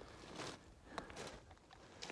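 A few faint clicks and crunches of boots on loose rocky ground.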